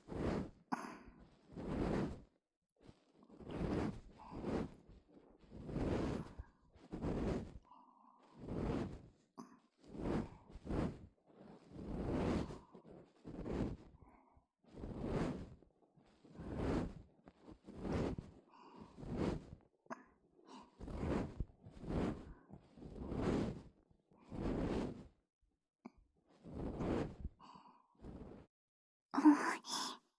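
An ear pick scraping at the entrance of the ear canal, picked up close on a binaural microphone, in soft repeated strokes about once a second.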